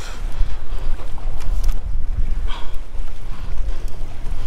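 Wind buffeting the camera microphone in a loud, steady low rumble over choppy water, with a few faint clicks and a brief hiss about halfway through.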